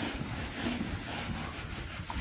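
A handheld whiteboard duster wiped hard across a whiteboard to erase marker writing, a scratchy rubbing in quick back-and-forth strokes, several a second.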